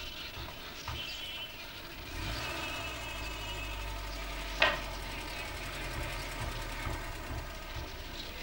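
Mercedes-Benz W123 sedan's engine running with a low, steady rumble that comes in about two seconds in as the car moves off. A single sharp knock sounds about halfway through.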